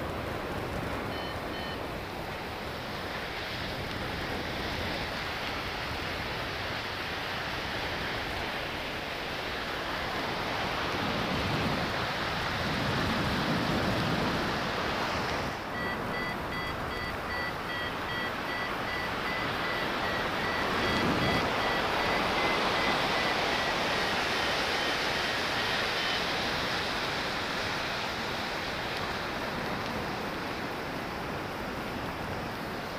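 Rushing wind on a paraglider's camera microphone in flight, a steady noise that swells and eases. About halfway through, a paragliding variometer's faint high beeping comes in and runs for about ten seconds, the sign of the glider climbing in light lift.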